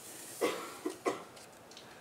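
A person coughing: three short coughs in quick succession about half a second in, the first the loudest.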